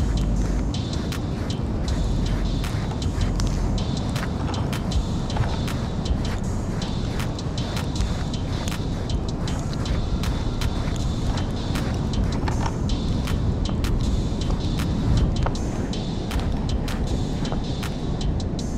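Steady wind rumble on the microphone on an open beach, with scattered small clicks and rustles from hands handling a cotton-wrapped bait fish close to the mic.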